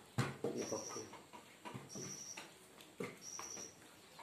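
Serving and eating sounds: a metal spoon scooping chicken curry from a bowl and knocking against it, with a sharper knock just after the start and another about three seconds in. A short, high, thin chirp repeats about every second and a half.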